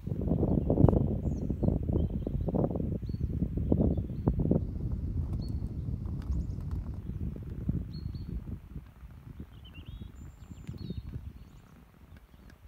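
Wind rumbling on the microphone outdoors, strongest in the first few seconds and fading away toward the end, with small birds chirping now and then.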